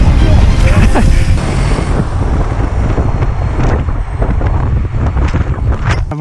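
Heavy wind buffeting on the bike-mounted camera's microphone while a mountain bike rides fast, with scattered rattling clicks from the bike running over rough ground.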